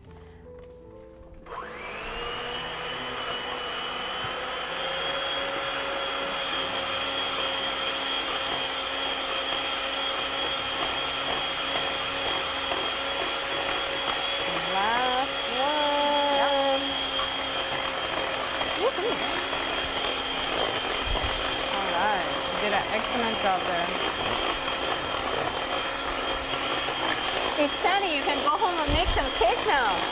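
Electric hand mixer switching on about a second and a half in and then running at a steady whine, its beaters working eggs into creamed butter and sugar for a fruit cake batter.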